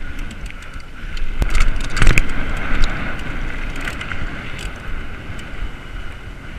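Wind rushing over an action camera's microphone as a mountain bike rolls quickly down a dirt trail, with rattles and knocks from the bike over bumps, the loudest about two seconds in.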